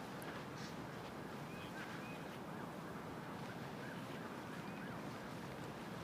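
Steady outdoor background hiss, with small, short bird chirps now and then.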